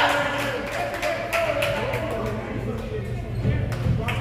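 Voices of players and spectators echoing in a gymnasium, with a handful of sharp, irregular knocks and a steady low hum underneath.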